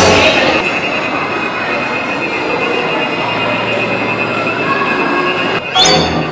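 A steady high-pitched squeal held over a continuous rushing noise, broken by a sudden change near the end.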